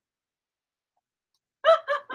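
Silence for about a second and a half, then a short burst of a woman's high-pitched laughter near the end.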